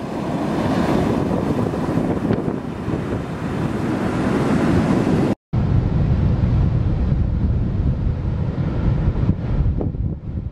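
Ocean waves breaking and surf churning, with wind buffeting the microphone. The sound cuts out for an instant about halfway through, then carries on.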